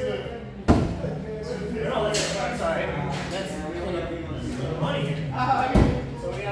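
A thrown axe striking a wooden target board with a sharp thud less than a second in, in a large echoing room. Voices talk in the background, and there is a second, shorter knock near the end.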